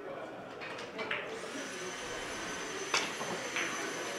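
Cue tip striking a carom billiard ball with one sharp click, followed about half a second later by a fainter click as the balls meet. A steady high-pitched whine runs underneath.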